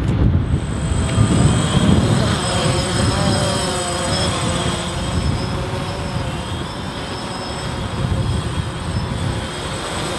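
DJI Phantom quadcopter in flight, its four electric motors and propellers giving a steady whirring whine whose pitch wavers as it holds its hover, over a low wind rumble on the microphone.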